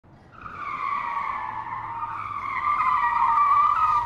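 Tyre-screech sound effect: one long, wavering squeal that fades in over the first second and grows a little louder near the end.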